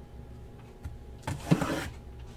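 A hand sliding against and knocking a sealed cardboard shipping case, a short scrape with a dull knock about a second and a half in.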